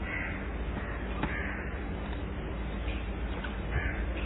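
Three short, harsh bird calls, one near the start, one about a second in and one near the end, over a steady low background hum.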